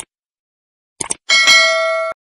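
Subscribe-button animation sound effect: quick clicks at the start and again about a second in, then a bright notification-bell ding that rings with several steady tones before cutting off suddenly at the end.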